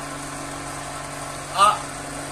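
Electric cotton candy machine running, its motor-driven spinner head giving a steady hum while candy floss spins out into the steel bowl. A man's short vocal sound breaks in once, about three-quarters of the way through.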